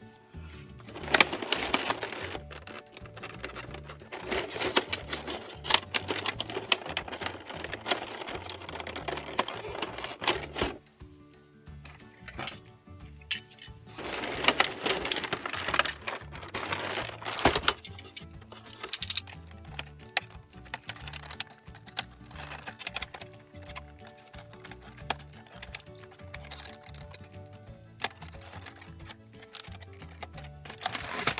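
Clear plastic wrapping crinkling and crackling as it is handled and cut open with a box cutter, in two long stretches with scattered clicks between, over background music.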